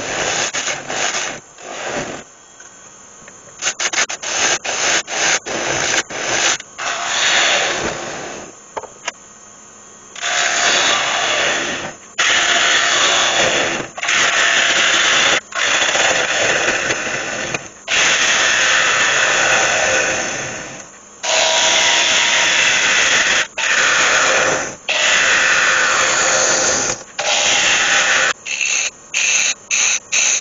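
Gouge cutting into the inside of a spinning ash bowl on a wood lathe, hollowing it down toward the wall thickness. The cuts are short and quick at first, then from about ten seconds in there are longer strokes of a second or two each, with a few short quick cuts near the end.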